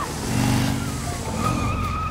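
Cartoon motorbike engine sound effect running, with tyres skidding on dirt.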